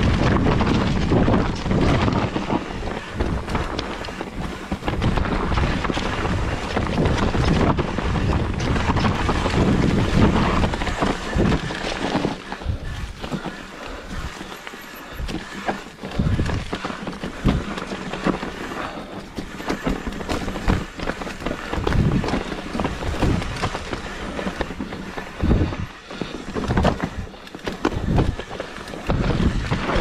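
Mountain bike riding down a rocky, leaf-covered dirt trail, heard from a handlebar-mounted camera: wind buffeting the microphone, tyres crunching over stones and leaves, and the bike rattling over bumps. The sound is a little quieter for a few seconds about halfway through.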